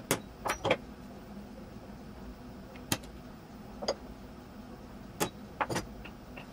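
Hammer striking a punch held on a block of O1 tool steel, punching the marked hole locations: about eight sharp taps at uneven intervals, with two quick ones near the end.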